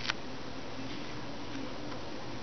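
Felt-tip marker dabbing stripes onto a fly's fibres at the tying vise, with one sharp click just after the start over a steady low room hum.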